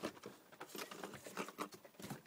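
Faint, irregular light taps and rustles of cardboard parts being handled, with no motor running.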